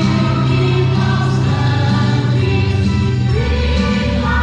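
A choir singing a slow song with instrumental backing, holding long notes; the chord changes a little over three seconds in.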